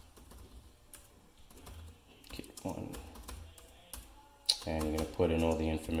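Typing on a computer keyboard: a run of irregular key clicks, with a man's voice coming in briefly near the end.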